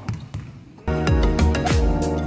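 A basketball bounces twice on a court floor, then loud music with a beat and deep sliding bass notes comes in suddenly just under a second in.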